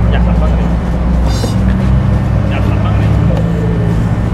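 A car engine idling with a steady low hum, and a brief high chirp about a second in.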